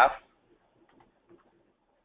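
The tail of a man's spoken word, its pitch falling, then a pause of near silence with a couple of faint ticks.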